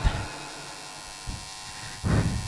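A low, steady electrical hum, with one brief soft sound about a second and a quarter in.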